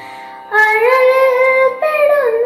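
A girl singing a Malayalam devotional song. She comes in about half a second in on a long held note with a slight waver, then moves to a new note with an ornamented glide near the end, over a faint steady drone.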